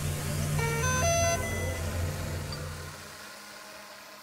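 Electronic sound effect on a logo card: a low rumble with a quick run of short beeps stepping up in pitch about half a second in, then fading away over the last second.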